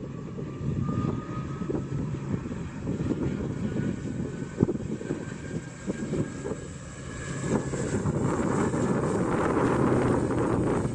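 ATR turboprop airliner's engines and propellers running up to takeoff power on the takeoff roll. A whine climbs slowly in pitch over a steady rumble, and the sound grows louder in the last few seconds as the aircraft accelerates.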